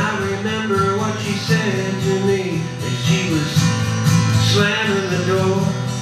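Acoustic guitar strummed in a country folk-rock song: an instrumental stretch with no lyrics sung, with pitched lines bending up and down over a steady rhythm.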